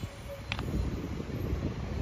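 Wind buffeting a handheld microphone outdoors: an uneven low rumble, with one short click about half a second in.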